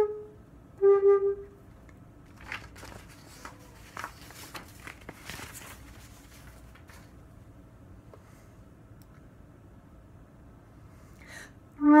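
Alto flute with a curved headjoint playing a held note and then a short note. Then comes a rest of about nine seconds with only faint clicks and handling noise. Playing resumes just before the end with a quick run of notes that reaches down near its low range.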